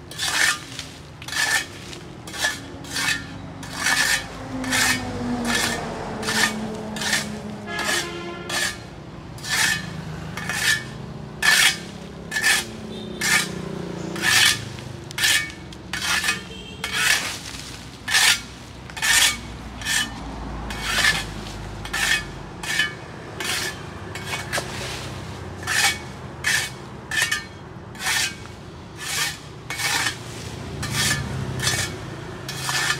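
Shovel blade scraping over paving stones and pushing dry leaves, in rapid, even strokes of about one and a half a second.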